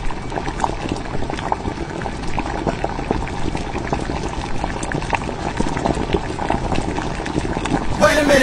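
Hot pot broth at a rolling boil in a split pot of red chili-oil broth and clear broth, bubbling steadily with many small pops.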